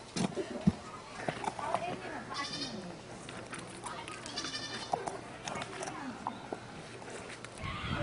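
A goat bleating twice, about two and a half and four and a half seconds in, over scattered short knocks and faint voices.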